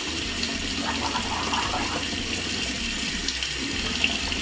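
Bathroom sink tap running steadily into the basin.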